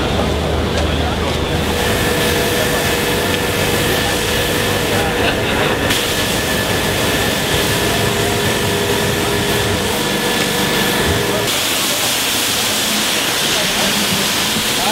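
Water spray from a hose wand, a steady hiss that grows louder and brighter near the end, over crowd chatter.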